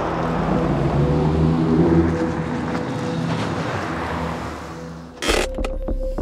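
A car passing by on a road: the tyre and engine noise swells over about two seconds and then fades away. A sudden loud thump comes near the end.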